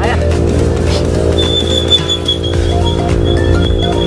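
Background music: a steady low drone under a short stepping melody, with a long high held note from about a second and a half in.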